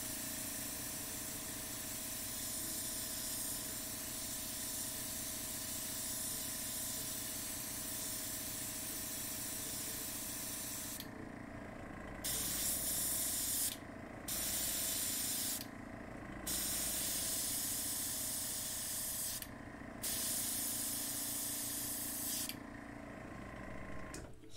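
Gravity-fed PointZero airbrush spraying acrylic paint: a continuous hiss of air for about eleven seconds, then four shorter bursts as the trigger is pressed and let go, over a steady low hum.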